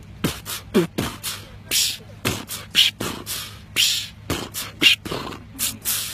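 A man beatboxing: a quick, uneven run of vocal percussion, low kick-like thumps mixed with hissing snare-like sounds, about three or four a second.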